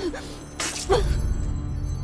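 A dramatic orchestral score with steady low tones and a bright shattering sound effect just over half a second in. A woman's short, falling pained cries come near the start and again about a second in.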